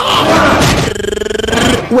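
A person's loud, drawn-out yell in a film fight, held on one pitch for about a second in the second half, after a noisy rush of scuffling sound.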